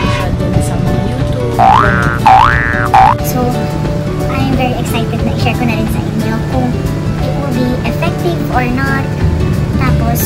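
Background music with three quick rising cartoon 'boing' sound effects in a row about two seconds in, the loudest sounds here.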